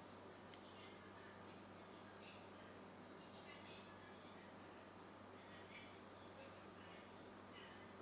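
Near silence: room tone with a faint, steady, high-pitched whine throughout.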